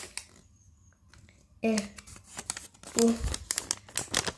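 Plastic wrapper of a small collectible packet crinkling and rustling as it is worked at and torn open by hand. It starts about a second and a half in, after near quiet, and continues as a run of sharp rustles.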